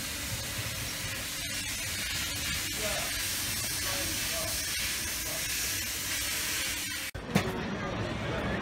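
A steady, even hiss, like spraying water, with no clear source. It breaks off suddenly about seven seconds in, and street crowd noise with voices follows.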